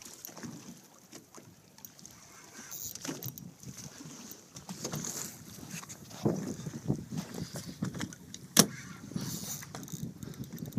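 Water slapping and lapping against the hull of a small boat in irregular swells, with a few light knocks and one sharp knock near the end.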